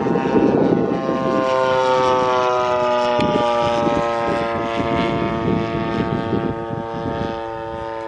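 Giant-scale RC aerobatic airplane flying past, its engine and propeller running in a steady drone. The pitch slowly sinks after about a second and then holds, and the sound grows fainter near the end.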